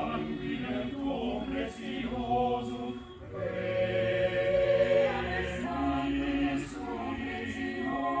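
Mixed-voice choir singing a cappella in held chords, with a brief break about three seconds in, then a louder phrase.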